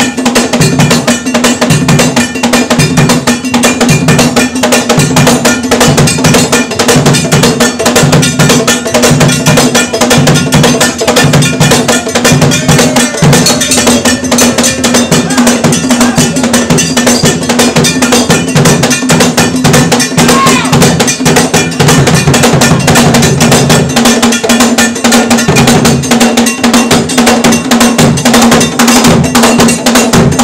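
Ghanaian traditional percussion: a struck iron bell keeps a fast, unbroken pattern over drums, with a deeper pulse about once a second.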